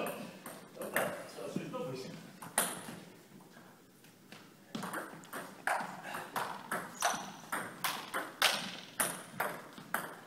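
Table tennis ball clicking off paddles and the table. A few scattered hits come first, then a steady rally starts about five seconds in, at roughly two hits a second.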